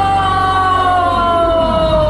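A boy's long drawn-out wail of dismay, "nooo", held as one unbroken cry that slowly falls in pitch.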